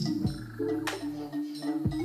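Electronic dance music in a DJ mix: a synth bass line stepping between held low notes, with sharp percussion hits and a few quick falling-pitch bass drops.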